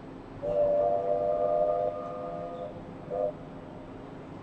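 Steam locomotive's chime whistle: one long blast of several notes, then a short blast near the end.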